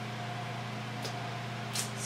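A steady low background hum with a faint steady tone above it. A brief hiss comes near the end.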